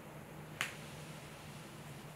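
A single short, sharp click a little over half a second in, over a faint steady low hum.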